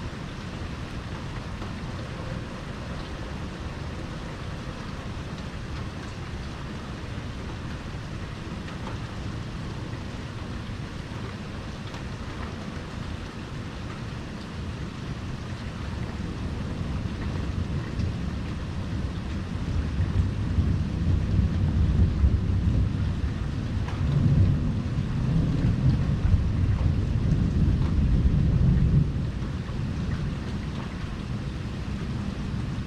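Steady rain falling, with a long, low rolling thunder rumble that builds from about halfway, is loudest in the last third and falls away just before the end.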